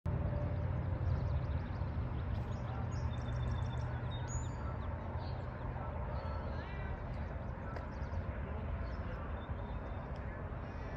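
Outdoor ambience: wind noise on a phone microphone, heaviest in the first few seconds, with birds chirping and whistling through it.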